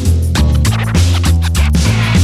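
Background music with a heavy bass line and a steady beat.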